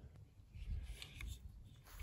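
Faint handling noise: light rubbing and rustling as electric-fence polywire is worked with both hands, over a low steady rumble.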